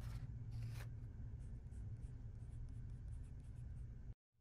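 Hands handling a fabric bow tie strap and its thread at a sewing machine: a couple of short scratchy rustles in the first second, then only a faint steady low hum.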